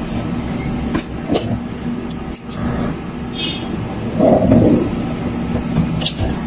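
Cardboard carton being handled and opened by hand: scattered clicks and scrapes, with a louder rustle about four seconds in, over a steady low rumble.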